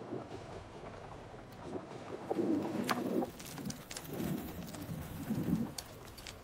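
AI-generated soundtrack of a Wan 2.5 cookie clip, prompted as cozy kitchen ambience: a soft steady room ambience with three low, soft calls from about two seconds in and a few faint clicks.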